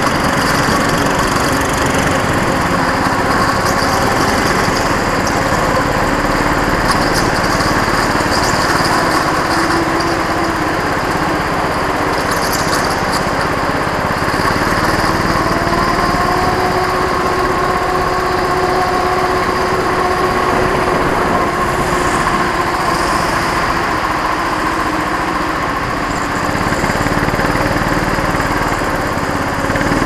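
Go-kart engine heard from on board the kart, running steadily under throttle, its pitch drifting up and down through the lap.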